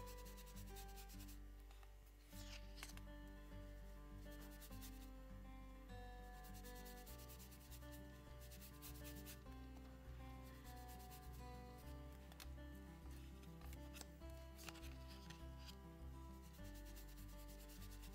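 Faint soft scratching as a blending brush is rubbed in short repeated strokes over cardstock, working ink onto the card's edges. Quiet background music with held notes runs underneath.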